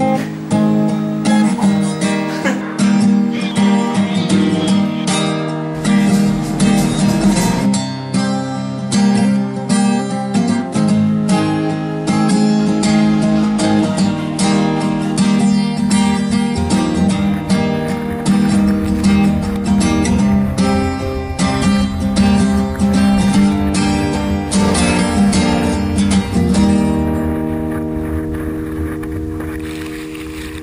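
Acoustic guitar strumming chords in a steady rhythm, an instrumental passage of the song, thinning and fading a little near the end.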